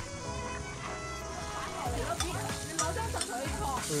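Background music, then from about halfway onions sizzling in a wok while a spatula stirs and scrapes against the pan, with the music going on underneath.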